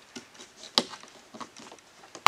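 Light clicks and taps of a hard plastic door trim piece being handled and lined up against the door panel, with one sharper click a little under halfway through.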